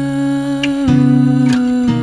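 Music: a wordless hummed vocal holding notes and sliding smoothly to a new pitch about once a second, over acoustic guitar.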